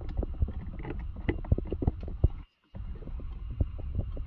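Plastic clicks and knocks of a cabin air filter cartridge being handled and pushed into its housing, over a low steady rumble. The sound cuts out for a moment a little past the middle, then the clicking goes on.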